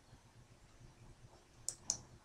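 Two quick clicks of a computer mouse button near the end, about a fifth of a second apart, as a context-menu item is chosen; otherwise faint room tone.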